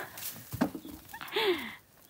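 Digging in dry earth with a short-handled hoe and bare hand: a knock of the blade into soil about a third of the way in, then a brief scrape of loose soil. A short falling voice-like sound comes with the scrape.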